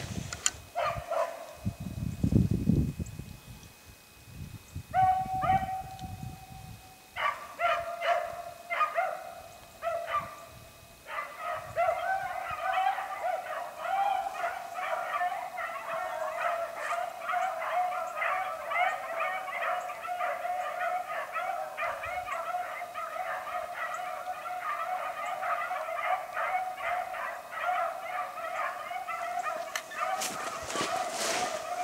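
A pack of rabbit dogs baying as they run a jumped rabbit's trail. A few separate bawls start about five seconds in, and from about eleven seconds the dogs are in full cry, a continuous chorus of baying. Low rustling in the brush is heard in the first few seconds.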